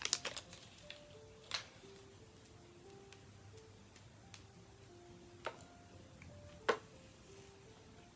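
Soft background music, a simple tune of single held notes, with a few sharp clicks of the charger cord and its packaging being handled.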